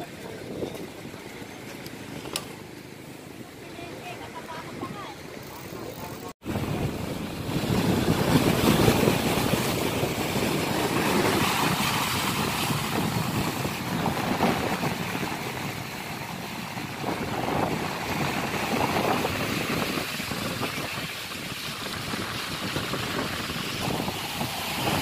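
Quiet outdoor ambience for the first few seconds; after an abrupt cut about six seconds in, choppy bay water washing and splashing against a rock seawall, with wind on the microphone, steady and much louder.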